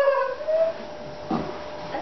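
A person's voice in a drawn-out, rising whoop, followed by a short vocal sound about a second and a half in.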